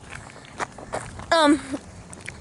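Footsteps of people walking, a series of light, irregular steps.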